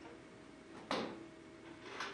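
A single sharp click or knock about a second in, with a short ring after it, followed by a softer brief rustle near the end.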